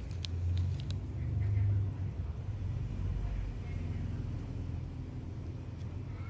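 A steady low rumble throughout, swelling in the first two seconds, with a few small sharp clicks in the first second and faint voices in the background.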